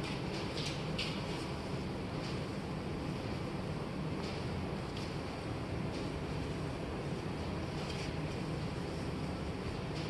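Steady low background rumble, with a few faint, irregular swishes of a shop towel being wiped over a truck's painted door.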